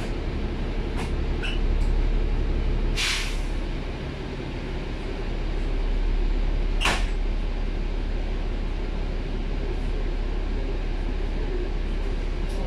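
Inside a stationary Alexander Dennis Enviro400 double-decker bus: a steady low rumble from the bus, with a sharp hiss of released air about three seconds in and a shorter hiss near seven seconds.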